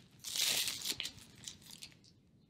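Plastic bread bag crinkling as it is handled. The crinkling is loudest in the first second and tapers off into a few faint rustles.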